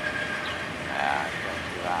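Freight train of bulkhead flatcars rolling past, a steady noise of wheels on rail, with a voice talking faintly over it.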